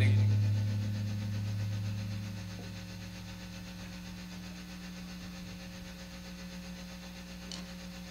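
A held low note from the band's amplified instruments rings out and fades over the first few seconds, leaving a quiet steady hum.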